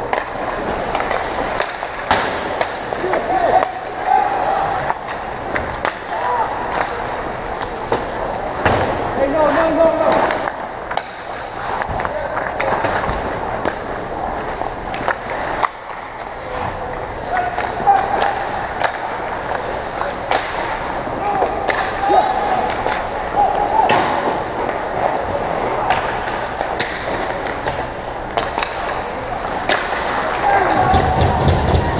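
Ice hockey play: skate blades scraping and cutting the ice, with frequent sharp clacks of sticks and puck and players shouting now and then.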